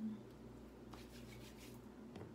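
Faint rubbing of fingers on skin as face cream is worked in, a soft brushing about a second in, over a steady low room hum.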